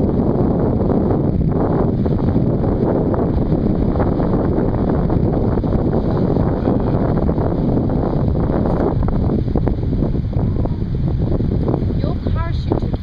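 Wind buffeting the camera's microphone: a loud, steady rumbling noise.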